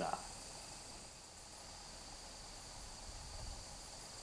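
Faint, steady trilling of crickets in the night air.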